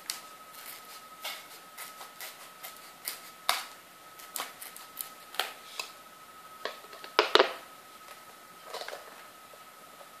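Scissors cutting a strip of taped cardboard: a series of irregular sharp snips and clicks, with a louder cluster of clatter about seven seconds in, then stillness near the end.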